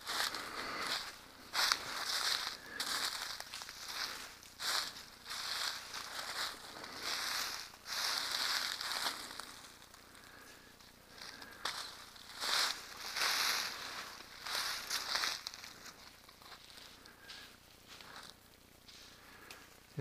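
Footsteps crunching on dry leaf litter and twigs, with brush and vines rustling against the walker, in irregular bursts. Busier and louder in the first half, quieter and sparser in the second.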